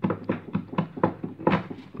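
A quick, irregular series of light knocks and taps, about a dozen in two seconds.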